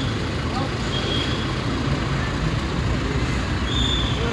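Motor vehicles running on the road at close range, a steady low rumble of engines and traffic, with a few short faint high tones over it.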